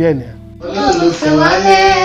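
A woman singing in a high voice, with held notes, starting about half a second in just after a man's speech breaks off.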